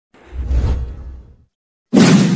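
Intro sound effect: a deep whoosh that swells and fades over about a second, then a moment of silence and the sudden start of a loud hit at the very end.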